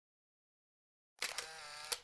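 Silence, then about a second in a short, quiet transition sound effect: a few clicks followed by a steady mechanical hum that stops with a click.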